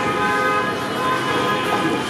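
A car horn sounding one held tone for about a second and a half, over steady street traffic noise.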